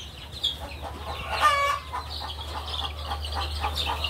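Young free-range chicks peeping in short high chirps as they are handled, with one louder, longer call about a second and a half in. A steady low hum runs underneath.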